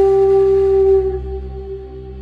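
Background music: one long held note on a flute-like wind instrument, steady for about a second and then fading away.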